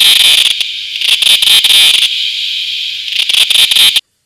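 Cicada calling: a loud, shrill buzz laced with rapid clicks. It eases slightly about halfway through, swells again, then cuts off suddenly.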